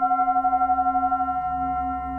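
Metal singing bowl sounded with a wooden stick, ringing with several steady tones that waver and pulse rapidly in level, slowly fading.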